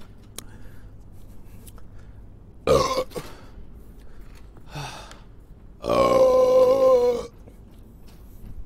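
A man burping after drinking from a bottle of cola: a short burp about three seconds in, a smaller one near five seconds, then a long drawn-out burp lasting about a second and a half whose pitch wavers, the loudest of the three.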